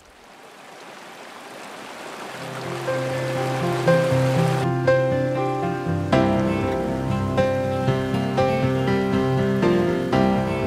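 A hiss of rushing water swells over the first few seconds and cuts off about five seconds in. Background music of plucked notes fades in underneath and then carries on alone, with a steady beat of notes.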